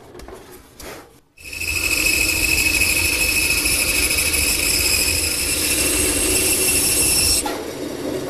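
Band saw cutting through a wooden rail: a loud, steady whine with a low hum underneath, starting suddenly about a second and a half in and dropping off near the end. The first second is quieter.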